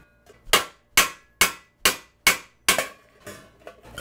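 Raising hammer striking a metal vase over a steel stake: six even, ringing blows a little over two a second, then a fainter blow near the end.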